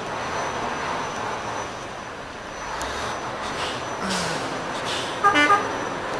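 Steady road and engine noise of a moving vehicle, with a short vehicle-horn toot near the end.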